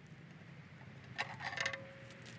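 A few light metallic clinks a little over a second in as the Honda K24's valve cover is lifted off the cylinder head, followed by a faint ringing tone.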